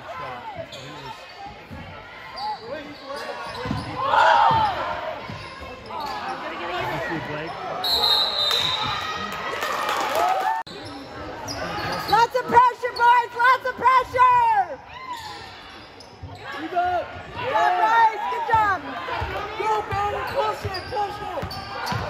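Basketball game in a gym: the ball bouncing on the hardwood court amid people's voices echoing around the hall.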